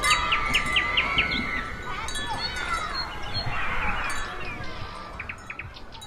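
Chime-like ringing tones mixed with short chirps, fading out over the last couple of seconds.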